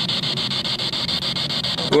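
Spirit box sweeping through radio frequencies: a steady hiss of white-noise static, chopped at a fast even rate.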